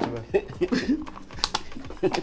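Quiet voices and chuckling, broken by a few light clicks and taps, one sharper click about one and a half seconds in.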